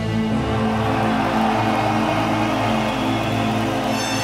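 Live metal band's music, past the heavy guitar riffing: a sustained, dark-sounding chord is held over a low note pulsing about three times a second.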